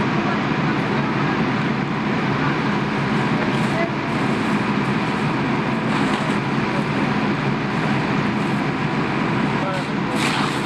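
Fire engine's diesel engine running steadily close by, a dense constant drone, with voices faintly audible over it.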